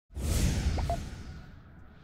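Whoosh sound effect of an animated logo intro. It starts loud and fades away over about a second and a half, its hiss sweeping down in pitch.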